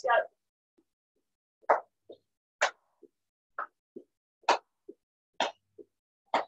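Trainers landing on paving during star jumps. From a little under two seconds in there is a short thud about every half second, alternating louder and softer as the feet land apart and then together.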